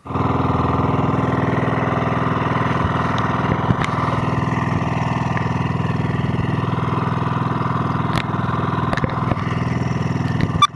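Small outrigger fishing boat's engine running steadily at a constant speed while under way, with a few sharp clicks over it.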